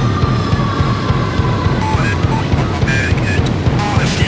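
Electronic soundtrack music built from synthesized and processed sounds: a steady pulsing low beat under several held high tones, with short electronic blips entering about halfway through.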